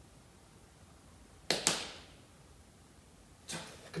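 Two hand claps in quick succession, echoing in an underground parking garage.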